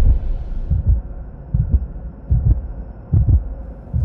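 Heartbeat sound effect in a film soundtrack: low thumps in lub-dub pairs, about one pair every three-quarters of a second, over a faint steady hum.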